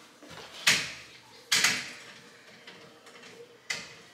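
A baby gate knocked and rattled by a toddler's hand: three sharp clanks, two close together early and one near the end.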